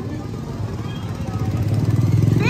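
Small motorcycle engine approaching along the street, its running growing louder toward the end, with faint voices in the background.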